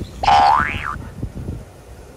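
Excited golden retriever giving one short, high-pitched whining yelp that rises sharply in pitch and then drops.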